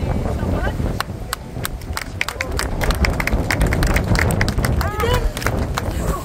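Strong wind buffeting the microphone in gusts of 70–80 km/h, with a run of irregular sharp clicks and taps and a voice in the background.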